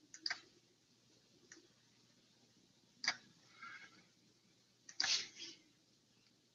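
A few faint, separate clicks of a computer mouse as a drawing is opened and zoomed on screen: one just after the start, one about three seconds in, and a quick cluster about five seconds in.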